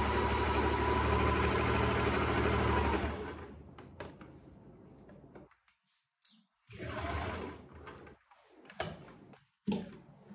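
Sewing machine running steadily while stitching through the corner triangle of a welt pocket, then stopping about three seconds in. Quieter rustles of fabric being handled and a few sharp clicks follow.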